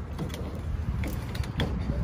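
A plastic multi-pin wiring-harness connector being handled and lined up in the hand, giving a few faint clicks and rustles over a low steady hum.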